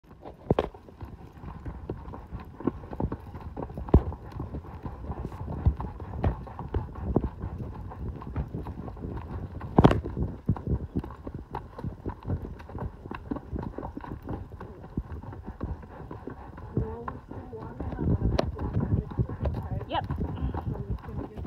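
A horse's hooves striking a rocky dirt trail as it climbs, giving irregular clops and sharp clicks, a few of them much louder than the rest.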